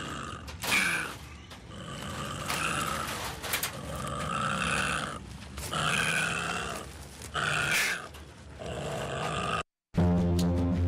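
Opossum in a wire trap cage hissing and growling with its mouth open, in repeated harsh bursts about a second long: the defensive threat display of a cornered opossum.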